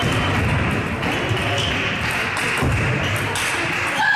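Table tennis ball clicking off the bats and table in a rally, a series of sharp clicks about two a second over the murmur of a large sports hall.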